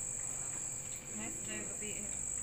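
Crickets chirping in a steady, high-pitched chorus that doesn't let up.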